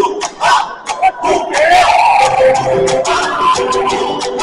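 Spectators shouting and cheering, then Latin mambo music starts about a second and a half in, with held notes and a fast rattling rhythm under continued cheers.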